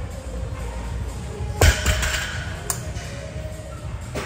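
A loaded barbell with 45-lb plates is set down on the gym floor during a deadlift set, making one loud thud about a second and a half in and a smaller knock about a second later. Background music plays throughout.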